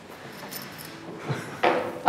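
Light knocks and clatter of small objects being handled on a wooden tabletop, the loudest knock about one and a half seconds in.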